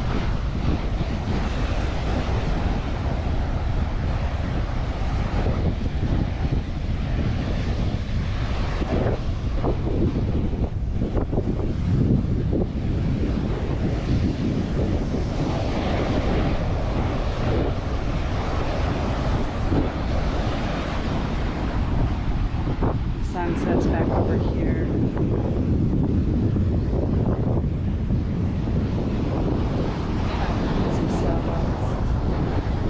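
Strong wind buffeting the microphone in a steady low rumble, with ocean surf breaking and washing up the beach underneath.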